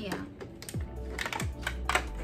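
Plastic packaging being handled: a run of sharp crinkles and clicks, the loudest near the end, over background music.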